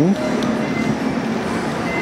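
Steady road-traffic noise, an even hum and hiss that holds at the same level throughout.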